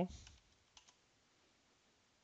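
A couple of faint computer keyboard and mouse clicks as a value is typed into a field, one just after the start and one under a second in, over quiet room tone.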